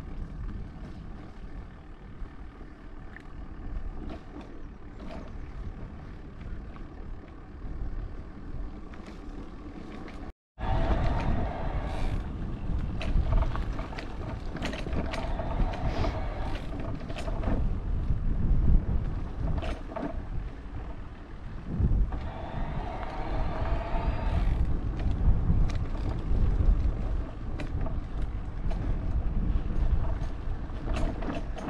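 Bicycle riding over a gravel dirt track: wind buffeting the microphone and tyres crunching on loose gravel, with frequent clicks and rattles. There is a brief cut about ten seconds in, after which it is louder, and a faint humming tone comes and goes a few times.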